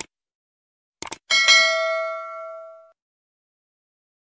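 Sound effects of an animated subscribe button: a short click at the start and a quick pair of clicks about a second in, then a single bright bell ding that rings out for about a second and a half.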